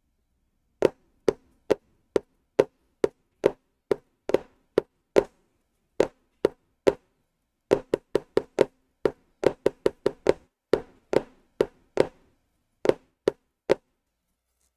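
Drum rhythm exercise tapped out with two sticks on a folder used as a practice pad. Sharp taps come evenly, a little over two a second, then in quicker groups from about eight seconds in.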